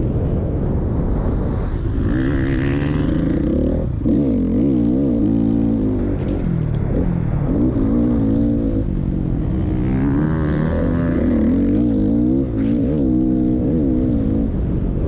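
Motocross bike engine heard onboard at speed, its revs repeatedly rising and falling as the rider accelerates and backs off around the track, over a steady rough rumble of wind and track noise.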